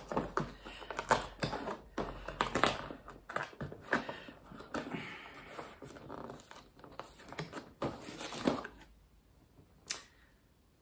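Paper and thin card being opened by hand: a dense run of crinkles, rustles, small tears and ticks that dies away about nine seconds in, followed by one sharp click near the end.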